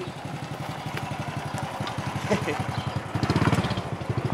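Small motor scooter engine running as it passes close by, a steady rapid putter that grows louder near the end.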